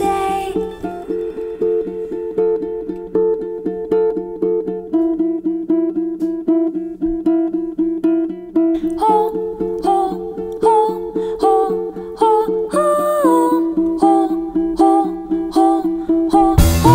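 Ukulele played in a quick, even pattern of plucked notes in a folk band's recording. About nine seconds in, a higher melody line with sliding notes comes in over it.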